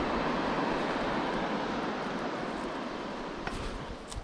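Steady outdoor rushing noise that slowly fades out, with a faint click or two near the end.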